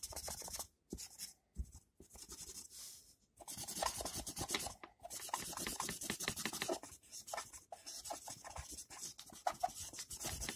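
A drawing tool shading back and forth on paper in rapid strokes. The strokes come in runs of a second or two, broken by brief pauses.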